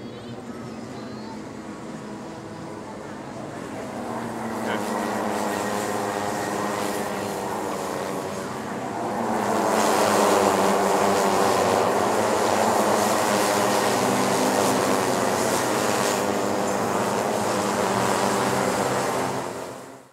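A pack of Rotax Micro Max two-stroke cadet kart engines racing, several engines at once with pitches rising and falling through the gears and corners. They grow louder from about four seconds in and are loudest from about ten seconds as the pack passes close. The sound drops away sharply at the very end.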